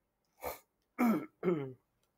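A man clearing his throat: a short rasping catch, then two voiced 'ahem' sounds falling in pitch.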